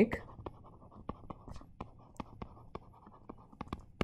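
Stylus tapping and scratching on a tablet screen as words are handwritten: a run of small, irregular clicks over a faint hiss.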